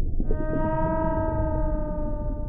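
A single long whale call, rising slightly and then held, over a low, steady underwater rumble. It is a sound effect in a logo sting.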